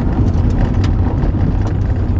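Car driving, heard from inside the cabin: a steady low rumble of engine and tyres on the road, with a few faint ticks.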